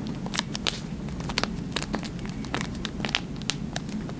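Close-up handling of a small plastic mood pod by fingers, giving irregular sharp clicks, taps and crinkles throughout.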